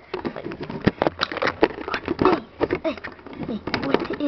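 A child's voice, partly indistinct, in short bits among scattered sharp clicks and knocks from handling.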